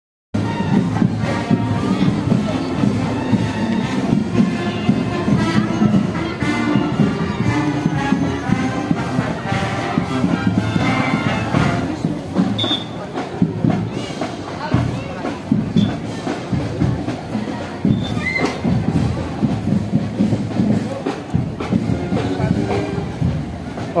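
A marching band playing in a street procession, with drumbeats running through the music and people talking nearby.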